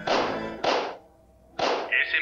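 Three cartoon rifle shots, each a sharp burst lasting a fraction of a second: two about half a second apart, then the third a second later.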